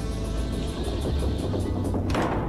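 Film score music: a low, steady drone with a faint quick ticking pulse above it.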